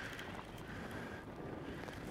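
Quiet, steady wind noise on the microphone over a low rumble, aboard a drifting fishing boat in a stiff wind.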